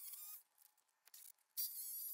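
Cordless drill running in two short bursts of about a second each, a high motor whine, as it fastens a wooden concrete form board.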